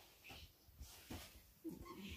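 Near silence: room tone with a few faint, soft rustles.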